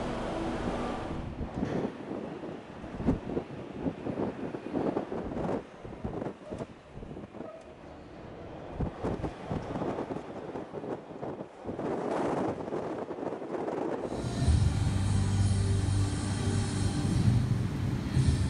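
Wind buffeting the microphone in irregular gusts and bumps, with no steady engine tone. About fourteen seconds in, music starts.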